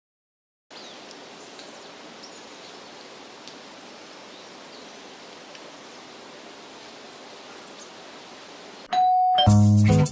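Faint steady hiss with a few light ticks. Near the end a short ding-like tone sounds, then loud music with a strong beat starts.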